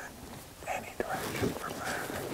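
A man speaking in a low whisper.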